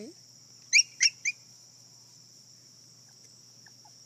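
Three short, high-pitched yips from a Yorkshire terrier puppy in quick succession about a second in, over a steady chirring of crickets.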